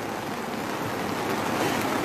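Steady rain pattering on the umbrellas overhead, growing slightly louder towards the end.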